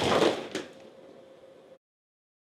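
A crash dying away, with a sharp knock about half a second in; the sound then cuts out abruptly to silence near the end.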